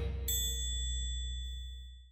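A single bright bell-like ding strikes about a quarter second in and rings on, fading away by the end, over a low held note left from the closing music as it dies out.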